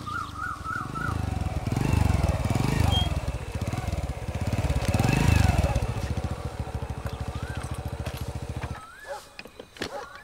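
Small single-cylinder commuter motorcycle engine running, revved up twice, then switched off just before the end. A few short bird chirps follow.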